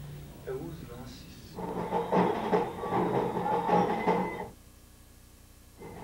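Soccer match broadcast audio: a swell of stadium crowd noise and voices lasting about three seconds, then dropping away shortly before the end.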